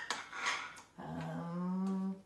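Short breathy noises, then a voice holding one steady hum for about a second near the end.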